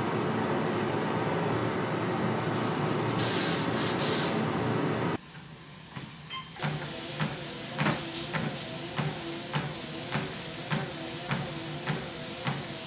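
A steady whooshing noise with a short hiss about three seconds in. Then a ProForm treadmill running, with footfalls on the belt at a walking pace of a little under two steps a second, its motor whine dipping with each step.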